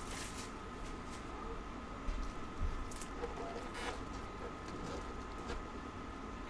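Faint handling noise of a trading-card box being opened, with a few soft taps and rustles about two to four seconds in, over a faint steady background tone.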